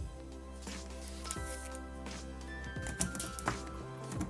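Background music with steady held tones, with a few soft clicks and taps from handling double-sided tape and cardboard, clustered near the end.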